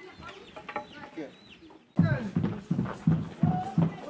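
Faint voices for the first two seconds, then an abrupt change to loud rhythmic drumming, about three beats a second, with voices over it.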